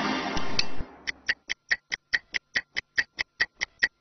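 Music trailing off in the first second, then a stopwatch ticking sound effect, sharp even ticks about five a second, timing a 30-second recovery rest between exercises.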